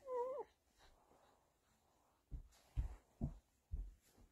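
A young baby's short wavering coo, about half a second long, at the start. Then four low thumps about half a second apart.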